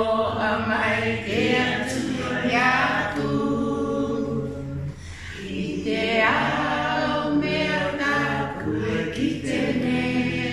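Unaccompanied singing, with a woman's voice leading in long held notes and a short break about five seconds in.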